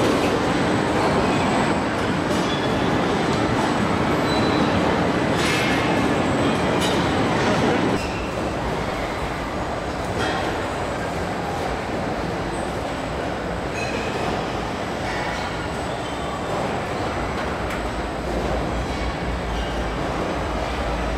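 Steady din of a robotic car-body assembly line: a dense machinery noise with scattered clicks and clanks. It gets a little quieter after about eight seconds.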